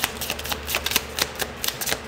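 A deck of tarot cards shuffled by hand: a quick, uneven run of card clicks and flicks, several a second.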